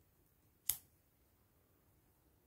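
A single snip of scissors cutting through cotton yarn: one short, sharp click less than a second in.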